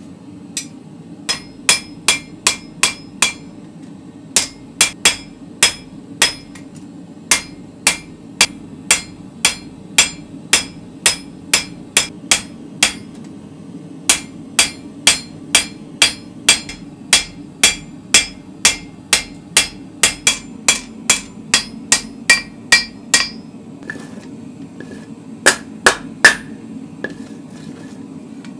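Hand hammer forging a red-hot spring-steel sword blade on an anvil, each blow ringing. The blows come about two a second in runs, with short pauses between them, and a few of the loudest fall near the end.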